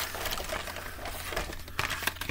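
Carded Hot Wheels blister packs being handled and shuffled: the stiff plastic bubbles and card crackle and click, with a few sharper clicks near the end.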